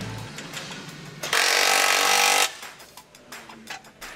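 A cordless power tool runs in one burst of a little over a second, driving a bolt into a galvanized steel winch stand on a boat trailer. Light clicks and background music are heard around it.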